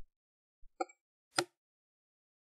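Two short, sharp computer-mouse clicks, about a second apart, with a couple of faint low bumps before them and silence between.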